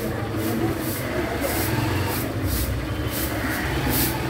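Motorcycle engine running steadily at low speed, a continuous low hum, with faint voices in the background.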